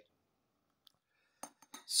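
Near silence, then a sharp glass clink about one and a half seconds in, followed by a few fainter ticks: a glass beer bottle knocking against a stemmed glass during a pour.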